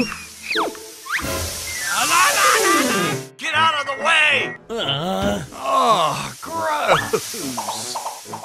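Background music mixed with cartoon sound effects and squeaky, wordless voice-like noises, including a long falling whistle-like glide in the first few seconds and short rising glides.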